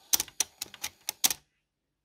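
Irregular clicking from the Technics RS-X101 cassette deck's take-up reel drive, about eight clicks in just over a second, as the reel jams at the missing teeth of its soft plastic drive gear. The clicking cuts off abruptly to silence.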